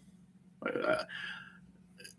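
A man's short, quiet throaty vocal sound a little over half a second in, followed by a faint breathy hiss, a hesitation between words.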